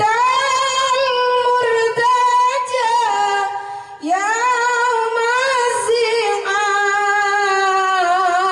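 A female voice singing sholawat unaccompanied into a microphone, in long held notes that slide and ornament between pitches, with a short breath about four seconds in.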